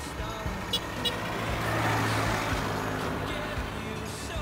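A motor vehicle driving past on the road, rising to its loudest about two seconds in and then fading.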